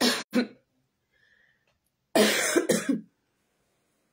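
A woman coughing close to the microphone: two quick coughs at the start, then a longer run of several coughs about two seconds in.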